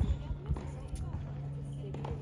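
Tennis ball being hit and bouncing on a hard court: a few sharp knocks, the loudest at the start and another about half a second later, over a steady low hum.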